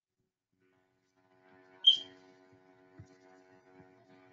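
After about a second of silence, a faint steady hum comes in. A single brief, sharp, high-pitched chirp sounds about two seconds in, followed by a few faint low knocks.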